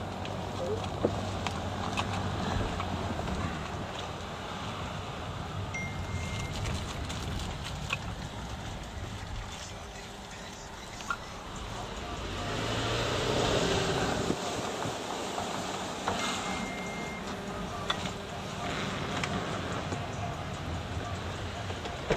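Car cabin noise of a vehicle running at low speed: a steady engine and road hum, with a swell of noise about two thirds of the way through. Two short high beeps sound, one about a quarter of the way in and one about three quarters of the way in.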